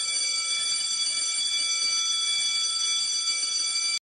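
An alarm bell ringing continuously at a steady level, starting abruptly and cutting off suddenly at the end.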